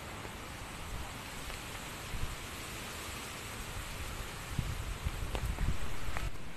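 Steady rain falling, a continuous even hiss, with uneven low rumbles of wind on the microphone that grow stronger near the end.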